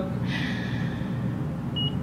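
Steady low hum inside a moving traction elevator cab, with a breathy hiss in the first second or so and a short high beep near the end.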